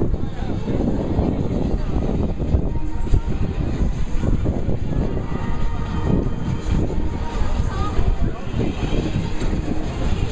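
A cheer squad shouting a cheer in unison, heard across a stadium field over a steady low rumble of wind on the microphone.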